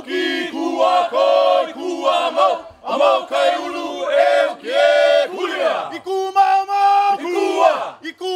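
A small group of voices, men and a woman, chanting together in Hawaiian in short phrases with brief breaks, then holding one long steady note about six seconds in.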